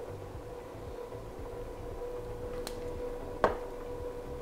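Steady low hum of kitchen background noise, broken once about three and a half seconds in by a sharp clack as a small jar of food colouring is set down on the counter.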